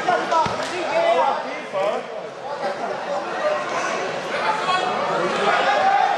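Overlapping indistinct voices and chatter of many people echoing in a large sports hall, with one dull thump about half a second in.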